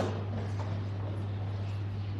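A steady low hum with faint room noise, in a pause between spoken lines.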